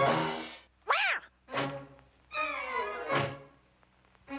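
Cartoon orchestral score with quick swooping pitch slides up and down, punctuated by thuds of a slapstick crash.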